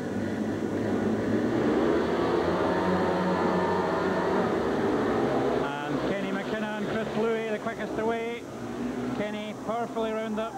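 Speedway bikes' single-cylinder methanol engines revving and racing away from the start, a dense multi-engine noise at its loudest about two seconds in. From about six seconds in the engines are fainter under a voice.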